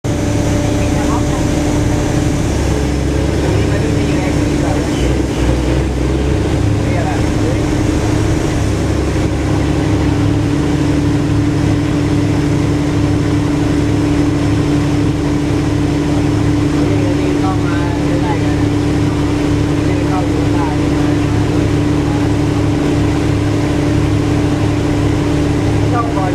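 A boat engine running steadily: a constant low drone with a steady hum that holds the same pitch and level throughout.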